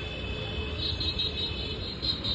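Street traffic: the low rumble of cars and auto-rickshaws passing close by. Thin high tones sit over it, and from about a second in a quick high pulsing chirp comes about five times a second.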